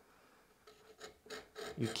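Sharp hand chisel paring the edge of a wooden board: a few short, faint scraping strokes beginning under a second in. A man's voice starts near the end.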